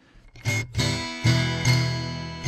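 Homemade guitar built into the plastic body of an old Nintendo console, heard through its piezo pickup, strummed a few times starting about half a second in. The chords ring on with a thin tone that sounds like plastic.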